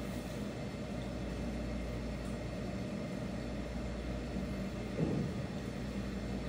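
Quiet room tone: a steady low hum with a faint hiss, and a brief murmur of voice about five seconds in.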